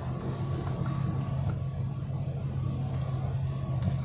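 Steady low hum of a vehicle's running engine, heard from inside the car's cabin, rising slightly at first and then holding even.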